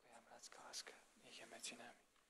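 Faint, quiet speech, close to a whisper: a few murmured words.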